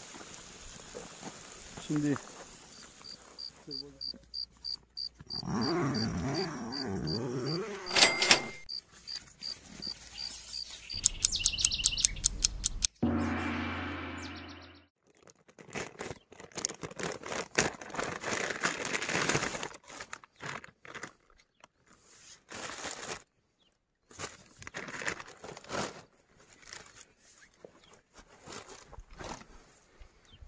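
Plastic packaging crinkling and rustling in irregular crackles through the second half, as mackerel fillets are cut out of their bags and unwrapped. Before that come a voice, a run of evenly spaced high ticks, and a short loud pitched sound.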